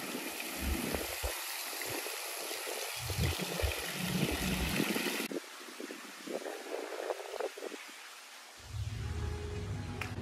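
Courtyard fountain splashing, a steady watery hiss that cuts off suddenly about five seconds in, leaving a quieter background with a few low thumps and a low hum near the end.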